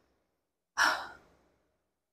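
A woman's single short breath out, about a second in, noisy with no voiced pitch and quickly fading; near silence around it.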